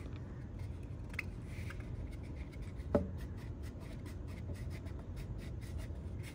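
Quiet handling sounds of a 3D-printed plastic cup being turned in the hands: faint rubbing and light ticks, a small click about a second in and a short knock near three seconds, over a low steady room hum.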